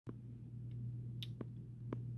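Faint steady low hum with a few small, sharp clicks scattered through it.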